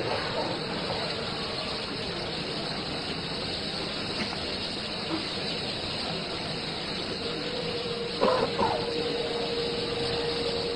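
Steady hissing background noise of a large, quiet congregation, with no one leading aloud. A faint steady hum comes in about seven and a half seconds in, with a brief faint voice soon after.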